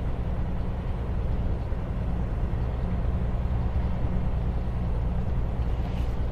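Heavy truck's diesel engine running steadily under load on an uphill mountain grade, heard from inside the cab as an even low drone.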